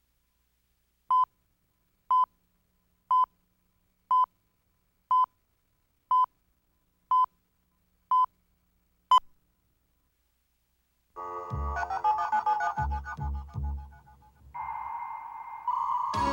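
Countdown-leader beeps: nine short beeps of one pitch, one a second, the last one sharper. After about two seconds of silence, music with a heavy beat starts.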